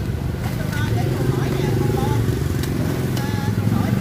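A motorcycle passing close by, its engine hum swelling and easing off. A few sharp knocks near the end come from a machete striking coconut husk.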